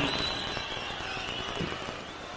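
Large arena crowd's steady background hubbub, with no clear cheer or clapping standing out.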